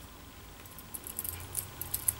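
Butterfly knife (balisong) handles and pivots giving a run of small, faint metallic clicks and rattles as the knife is spun around the index finger. The clicks start about a second in.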